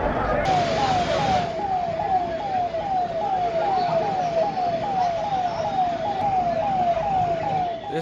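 An emergency vehicle siren sounding a rapid repeating falling tone, nearly three sweeps a second, with a burst of street hiss near the start.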